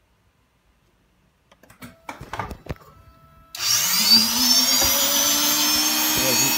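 A few handling knocks and clicks. Then, about three and a half seconds in, an electric motor starts abruptly, its whine rising as it spins up, and runs on steadily at a high pitch.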